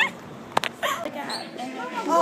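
Stifled, muffled giggling from a girl with her hand over her mouth, with one sharp click about half a second in and faint voices after it.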